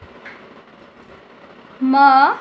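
Low steady background hiss, then a voice says the Hindi syllable "ma" near the end.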